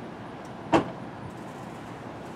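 A Chevrolet Corvette's driver's door being shut: one solid thump about three quarters of a second in.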